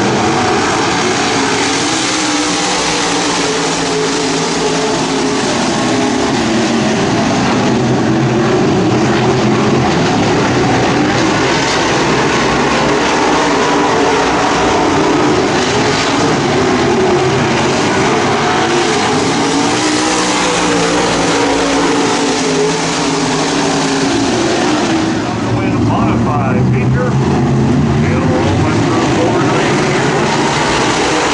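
A pack of dirt-track modified race cars' V8 engines running hard in a heat race, several engine notes overlapping and rising and falling in pitch as the cars drive through the turns and pass by.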